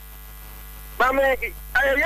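Steady electrical mains hum on an open broadcast or phone line. A person's voice breaks in about halfway through and goes on after a short pause.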